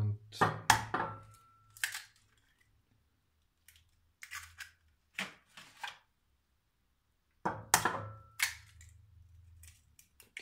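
Eggs cracked on the rim of a glass bowl: sharp taps, each group followed by a brief ringing of the glass, once about half a second in and again near the end, with small clicks of shell between.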